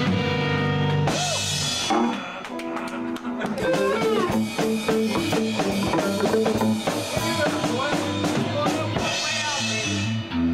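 Live rock band playing without vocals: electric guitars, one playing a lead line with bent notes, over a drum kit that plays more densely from about two seconds in.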